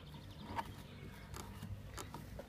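Faint handling noises: a few soft clicks and rustles as string is fed through the moulded plastic bow handle of a kayak, over a low steady background.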